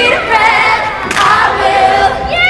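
Choir of teenage singers singing, many voices sliding and bending in pitch, with little or no accompaniment under them.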